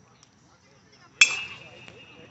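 A metal baseball bat hitting a pitched ball: one sharp ping a little past halfway, ringing on briefly.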